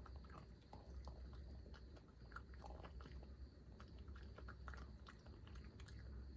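A raccoon chewing and crunching peanuts: a faint, irregular run of small crunches and clicks, over a low steady hum.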